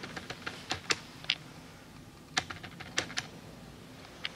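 A scatter of short, sharp clicks and taps in two irregular runs, the first in the opening second and a half and the second about two and a half seconds in.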